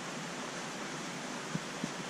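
Steady background hiss of a fish house full of running aquariums, with two faint clicks near the end.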